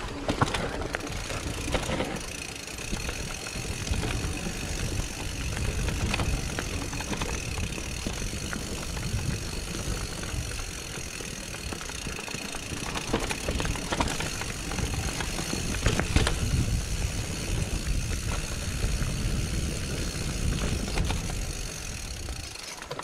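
Mountain bike descending a rocky dirt singletrack: tyres rolling and crunching over dirt and loose stones, with the bike rattling and knocking over bumps and rocks above a continuous low rumble.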